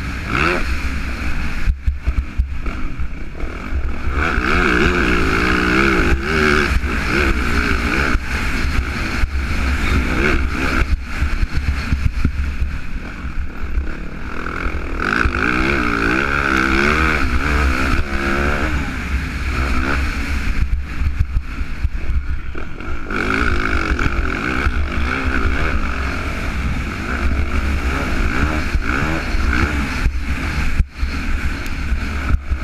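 Yamaha motocross bike's engine heard from on board, revving up and down repeatedly as it is ridden hard, with a few short lulls, under heavy wind buffeting on the microphone.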